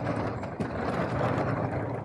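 Hard-shell carry-on suitcase's wheels rolling steadily over a concrete parking-garage floor, a continuous low rumble and rattle.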